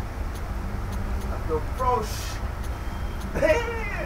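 Short bits of a person's voice, about a second and a half in and again near the end, over a steady low rumble. Faint ticks recur at an even pace underneath.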